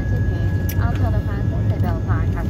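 Steady low drone inside a parked ATR 72-600 cabin, with a thin constant whine over it and passengers talking in the background.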